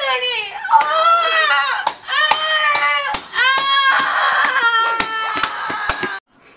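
A boy's high-pitched, wordless vocalizing: a run of drawn-out cries about a second each, each rising and falling in pitch, with sharp clicks scattered among them.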